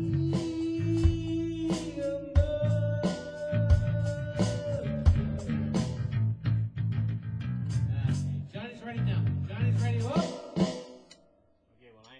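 Small rock band playing live, electric guitar over a drum beat and a bass line, with a long held note on top; the music stops about eleven seconds in.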